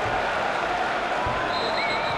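Football stadium crowd: a steady, unbroken mass of voices from the stands.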